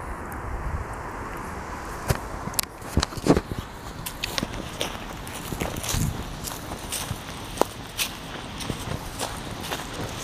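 Footsteps through overgrown grass and weeds: an uneven run of rustles and sharp clicks that starts about two seconds in.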